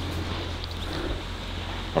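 Quiet outdoor background: a steady low rumble with no distinct event.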